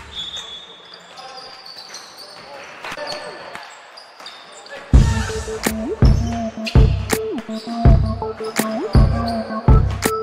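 Basketball being bounced on a hardwood gym floor, with faint court noise and voices, as the backing music fades out. About five seconds in, a hip-hop style backing track with a heavy, repeating bass beat cuts back in loud.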